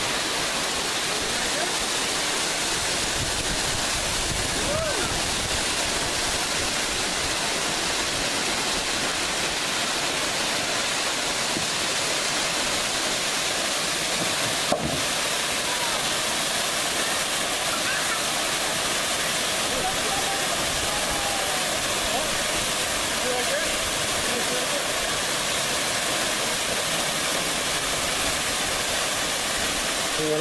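Waterfall pouring over granite rock: a steady, unbroken rush of falling water. A single sharp click comes about halfway through.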